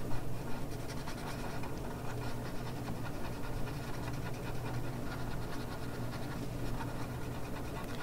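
Paper blending stump rubbing over pencil graphite on drawing paper in quick, short back-and-forth strokes: a soft, continuous scratchy rubbing, over a steady low hum.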